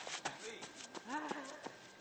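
Faint footsteps crunching on a gravel and dirt ground, light irregular taps, with a short voice call about a second in.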